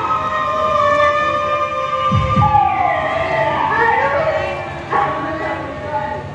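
A voice singing or chanting long, drawn-out notes that slide and waver in pitch, as in sung stage dialogue, with a couple of deep low beats about two seconds in.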